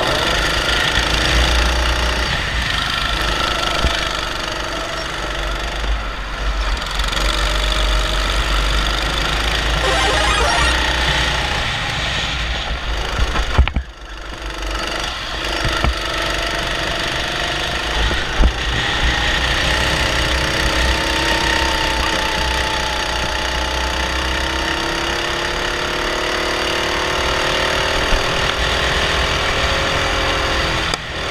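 Honda 270cc single-cylinder four-stroke kart engine running hard on track, its pitch rising and falling as the kart accelerates and slows for corners, with a brief break about halfway through.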